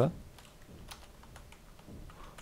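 A few light, scattered keystrokes on a computer keyboard.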